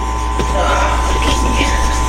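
A steady machine hum: a low drone with a thin, constant whine above it, with faint voices in the background.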